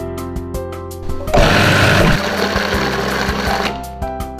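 Electric food processor motor whirring as it purees chopped spinach leaves into a green paste, starting about a second in and stopping near the end, over background music.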